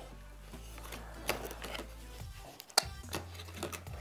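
Cardboard product box being slit open with a pocket knife and its flaps folded back: a few light clicks and scrapes, the sharpest near three seconds in, over faint background music and a low hum.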